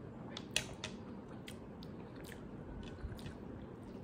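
Quiet chewing and eating mouth sounds, with scattered soft clicks as pieces of fruit are picked up and eaten by hand.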